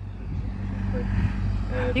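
Steady low engine hum of a vehicle running, growing gradually louder.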